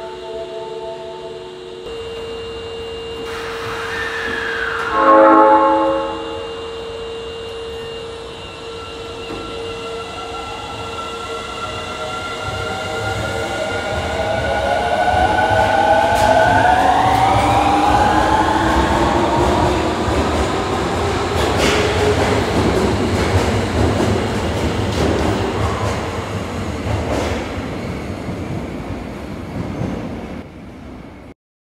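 Osaka Metro 23 series subway train departing: a short horn blast about five seconds in. Then the traction motors whine upward in several rising tones as it accelerates, with wheel-on-rail rumble growing loudest midway and fading near the end.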